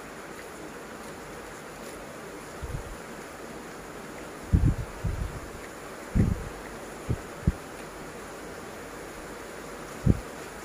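Several short, dull low thumps from a person eating at a table, over a steady background hiss. The thumps cluster about halfway through.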